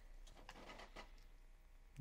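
A few faint, short scratches of a pen-style craft knife blade scoring through a sheet of Zipatone screen tone on paper.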